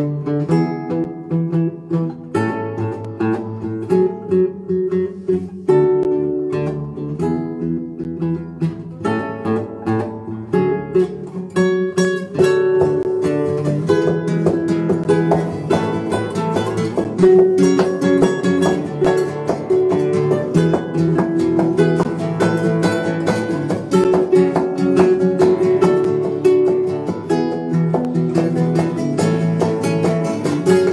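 Two nylon-string classical guitars playing a duet together: strummed chords with a picked melody over them, at a brisk, even pulse.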